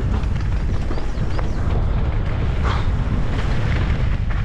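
Wind buffeting a helmet-mounted camera's microphone as a mountain bike descends a rocky gravel trail at speed, a steady low rumble with tyres running over loose stones and scattered knocks and rattles from the bike.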